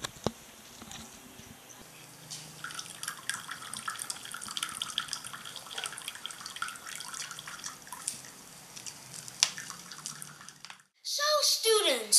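Filtered water trickling and dripping from the neck of a homemade plastic-bottle sand-and-charcoal filter into a cup, with many small drip ticks. It cuts off suddenly near the end.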